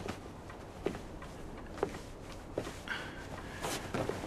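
Footsteps across a room: three soft steps a little under a second apart, then a brief rustle near the end.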